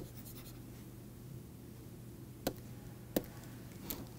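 A few short, sharp taps of a pen stylus on a tablet, with uneven gaps between them, over a faint steady low hum.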